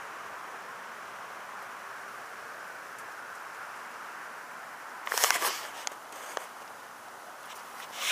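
Dry leaves and twigs rustling and crackling in a short burst about five seconds in, with a few single snaps after it, over a steady even background noise.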